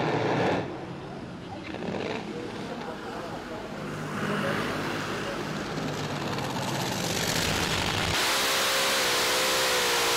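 Top Fuel dragster engine and crash noise that cuts off sharply just after the start, leaving a quieter, noisy background that builds slowly. About eight seconds in, a loud steady engine-and-wind noise starts, as heard from an onboard camera on a dragster, with a wavering tone under it.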